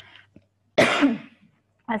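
A woman coughs once, sharply, about a second in.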